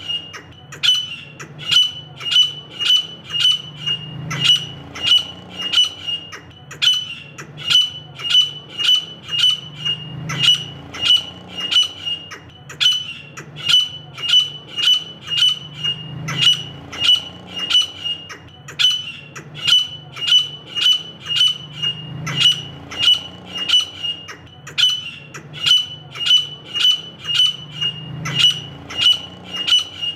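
Female grey francolin (desi teetar) calling: a sharp, high-pitched note repeated about twice a second in a long, steady series.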